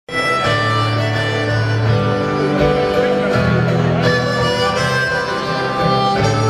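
Live rock band playing, recorded from among the audience: a harmonica holding long notes over guitars and bass.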